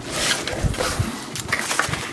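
Cardboard mailer box being pulled open by hand: a run of scraping and rustling with a few sharp clicks of the cardboard.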